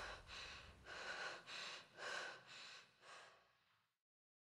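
Faint, quick, ragged breathing, a person panting in short breaths about twice a second that die away a little past three seconds in.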